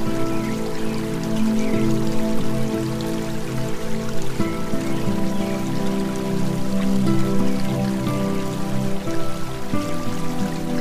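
Calm new-age background music of long held chords, with a pattering sound of rain mixed in.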